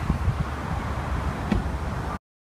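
Wind buffeting the microphone as a low, fluctuating rumble, with a couple of faint knocks.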